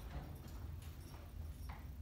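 Faint, scattered small clicks and taps of a hand working slowly at a grand piano's wooden cover, over a low steady room hum.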